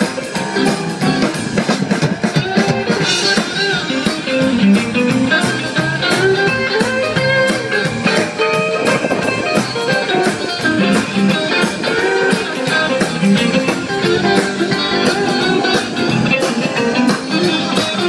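Live rock and roll band playing an instrumental passage with no singing: electric guitar, upright double bass, drum kit and electric keyboard, over a steady drum beat.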